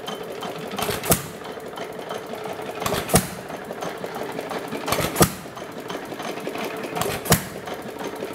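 Gade 1½ hp air-cooled hit-and-miss engine running on its governor: a sharp firing stroke about every two seconds, four in all, with a fast steady mechanical clatter as the flywheels coast between firings.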